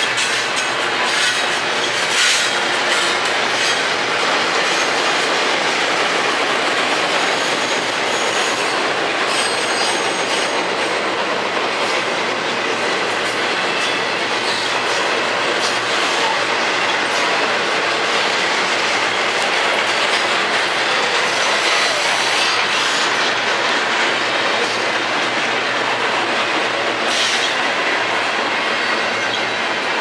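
Double-stack intermodal freight train's well cars rolling steadily past close by: a continuous loud rumble and clatter of steel wheels on the rails.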